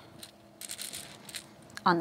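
Small game stones clicking and rattling against each other inside a cloth drawstring bag as a hand rummages through it; a few faint, scattered clinks.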